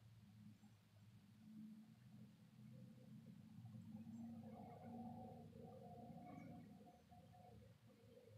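Near silence: room tone with a faint low hum, and a faint pitched sound in the second half.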